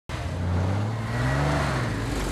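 Porsche 911 flat-six engine running and revving, its pitch rising gradually as the car pulls away.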